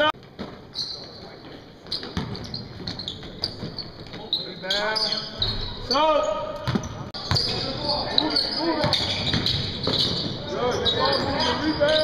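A basketball bouncing on a hardwood gym floor during live play, with repeated sharp knocks and short squeaks, echoing in a large hall, and voices calling out in the background.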